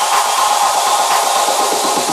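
Electronic dance music in a breakdown, with the bass dropped out: a loud hissing noise layer and a steady tone over a quick, light repeating rhythm, building toward the drop.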